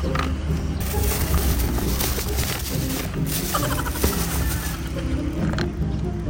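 Background music, with paper rustling as a folded sheet is handled.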